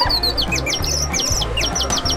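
A quick run of short, high-pitched, bird-like chirps, about five a second, over background music with a steady bass beat.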